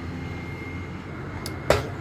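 Steady low background hum, with a faint click about a second and a half in and a short breathy burst just before the end.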